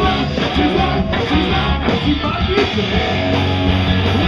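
Live rock band playing loud, with strummed electric guitars over bass and drums; no singing.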